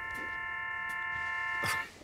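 A telephone line tone: a steady electronic chord held for about two seconds that cuts off abruptly near the end.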